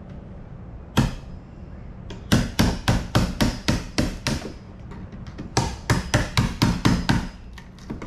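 Hammer striking a tool held against the edge of an old wooden door, with sharp, ringing metal-on-metal blows: one strike, then two quick runs of about four blows a second with a short pause between them.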